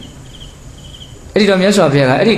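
Faint, high insect chirping, a few short trills at one pitch, heard in a pause of a man's speech. The man's voice comes back in loudly about a second and a half in.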